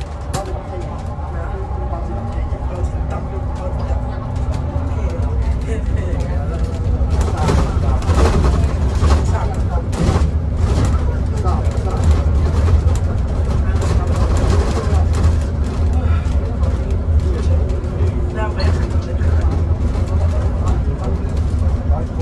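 Cabin noise inside a moving Alexander Dennis Enviro500EV battery-electric double-decker bus: a steady low road rumble with rattling from the interior fittings and a steady hum from the electric drive. The noise grows louder about seven seconds in.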